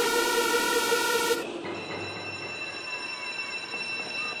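Electronic music with loud held synth chords that cut off about a second and a half in, leaving a quieter sustained synth tone.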